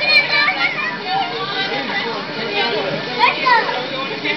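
Many children's voices chattering and calling out at once, high voices overlapping with no single speaker standing out, heard as a videotape played back on a TV.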